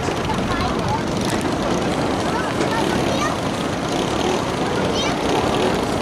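Small racing kart engines running together as a pack of karts laps a dirt oval, with people's voices talking over them throughout.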